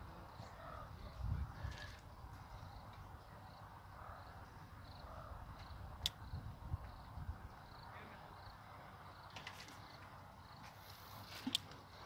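Quiet outdoor ambience with a few faint, sharp clicks and soft knocks, one about six seconds in and another near the end.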